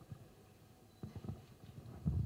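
Handheld microphone being handled as it is lifted: a few faint knocks and rubs starting about a second in, over quiet room tone.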